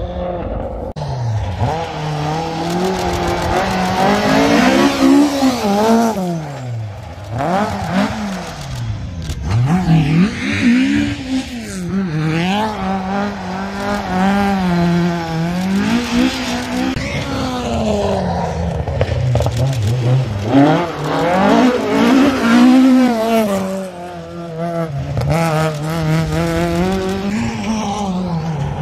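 Rally car engines revving hard past the microphone. The pitch climbs and drops again and again as the drivers change gear and lift off through the bends.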